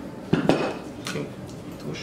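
Wooden block, two boards glued together, knocked down onto a wooden workbench: two sharp knocks close together about half a second in, followed by fainter handling sounds.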